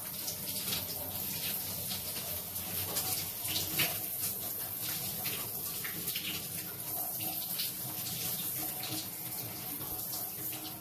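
Shower spray running steadily, the water splashing over a person's body and into a bathtub, with small uneven surges in the splashing.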